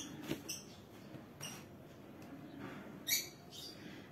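Ballpoint pen writing cursive on a paper workbook page: a few faint, short scratching strokes, the most distinct about three seconds in.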